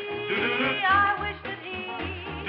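Four-voice vocal group singing close harmony in an upbeat swing number, with band backing and a bass line.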